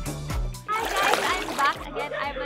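A water-splash transition sound effect, a short loud splashy burst just past halfway, over upbeat background music with a steady kick drum.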